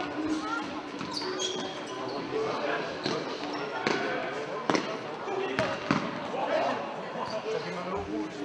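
Futsal ball being kicked and passed on a sports-hall floor, sharp thuds at irregular intervals, heard over players' calls and spectators' voices in the hall, with a few short squeaks.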